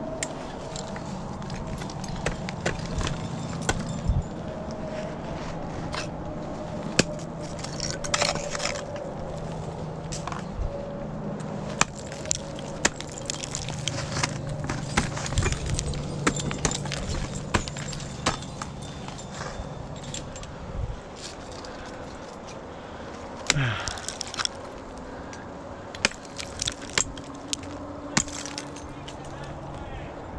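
Ice climbing on lead: repeated sharp strikes and knocks of ice tools and crampons on ice, with metal gear clinking, over a low steady hum; a short voiced grunt about two-thirds of the way through.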